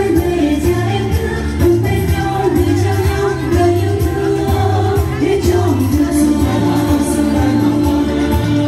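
A group of women singing together into microphones over amplified backing music with a steady, repeating bass beat.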